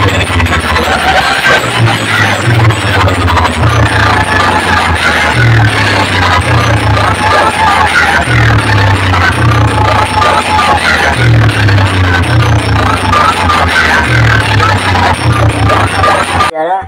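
Very loud electronic dance music blasting from a large DJ sound-box rig, driven by a heavy, repeating bass beat.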